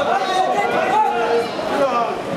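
Many overlapping voices of spectators talking and calling out in a large sports hall.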